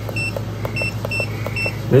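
A handheld portable ultrasound scanner's keypad giving four short, high beeps as its arrow buttons are pressed to set the measurement marker, with faint button clicks between them, over a steady low hum.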